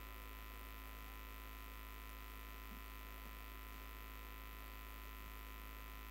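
Faint, steady low electrical hum with nothing else over it, typical of mains hum in a microphone and sound-system chain.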